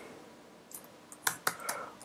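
A few computer keyboard keystrokes, short sharp clicks close together in the second half.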